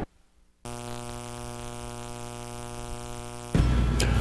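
After a brief silence, a synthesizer holds one steady, unchanging note for about three seconds. It gives way near the end to a louder, low rumbling sound.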